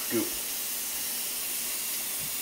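A steady hiss, with one short spoken word right at the start.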